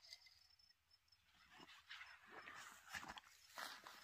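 Faint rustling and scuffing, busier in the second half, as a backpack is handled and a person shifts about on dry grass.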